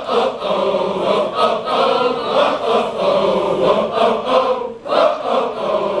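A large mixed group of men and women singing their class song together, unaccompanied. There is one brief break for breath about three-quarters of the way through.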